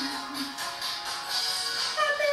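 Karaoke backing track playing, with a woman's held sung note ending about half a second in, then the accompaniment alone until the next line.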